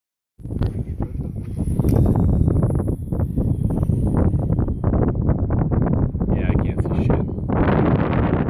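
Wind buffeting a phone microphone in a loud, gusty low rumble, with a broader hiss rising near the end.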